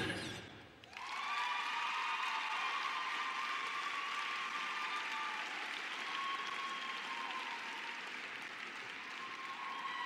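Arena audience applauding steadily. The music stops just before, and the applause swells in about a second in.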